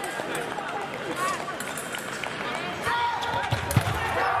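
Voices echoing through a large sports hall, mixed with footfalls and shoe squeaks of sabre fencers on the strip. A sharp stamp comes near the end.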